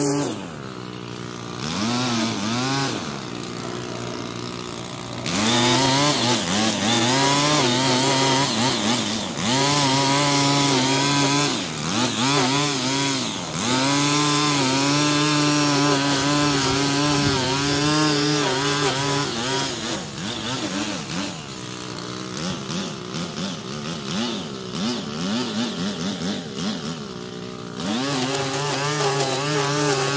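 Gas two-stroke string trimmer cutting grass, its engine note repeatedly dropping and climbing back up as the throttle is let off and squeezed again. There are quieter, lower stretches about a second in and again for much of the later part.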